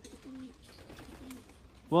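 Faint cooing of domestic pigeons from the lofts: a few soft low notes at the start and again briefly past the middle.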